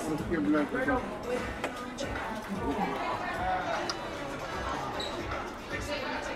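Restaurant dining-room ambience: background chatter and music, with a few light knocks of chopsticks against a serving tray as mutton is pushed off it into the hot pot.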